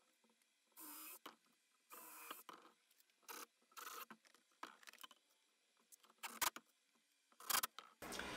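Faint, scattered handling noises: short scrapes and light knocks of wood and tools being moved on a plywood workbench, with two sharper knocks near the end.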